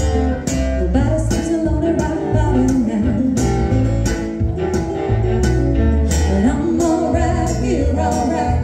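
A live acoustic band: a woman singing lead over a steadily strummed acoustic guitar, with a bass guitar and a fiddle.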